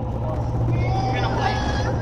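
Road and engine noise inside a moving car's cabin: a steady low rumble.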